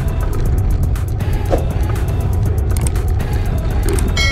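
Wind rumbling steadily on the camera microphone of a moving bicycle, with background music faintly over it.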